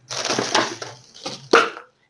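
Plastic zip bag of frozen mango cubes crinkling and crunching as it is handled. There is a longer stretch of rustling, then a short second burst about one and a half seconds in.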